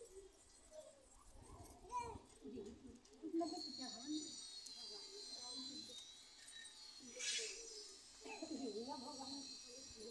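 Faint chatter of several voices in the background, with a thin, steady high-pitched tone from about three to seven seconds in.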